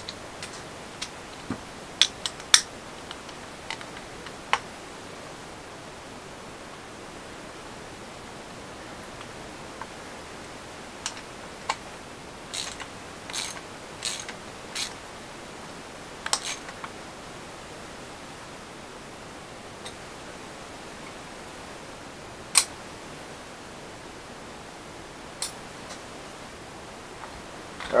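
Scattered clicks and taps of a hand tool working on a Zoeller M53 sump pump's cast-iron housing as its threaded plug is tightened, most of them in a cluster around the middle, over a steady faint hiss.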